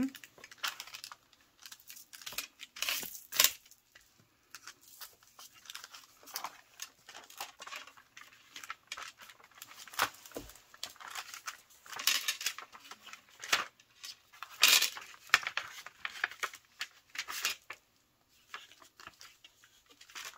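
Paper envelopes rustling and crinkling as hands fold, unfold and flatten them, in irregular bursts, louder about three seconds in and again near fifteen seconds.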